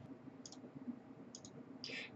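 A few faint, short clicks over quiet room tone: one about half a second in and two close together near one and a half seconds.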